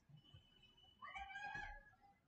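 A faint, short meow-like animal call about a second in, lasting under a second, over near-silent room tone.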